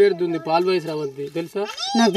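A woman talking in Telugu close to the microphone, in a high, drawn-out voice, with a long rising vowel near the end.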